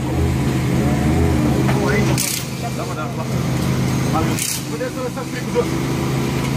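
A steady low engine hum, with people talking over it and two short hisses.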